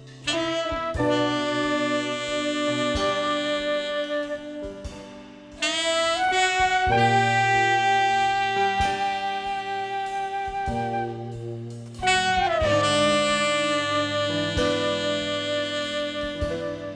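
Live jazz-rock ensemble playing a slow piece. Saxophone and horns play long held notes in three swelling phrases, each coming in about every six seconds over sustained bass notes.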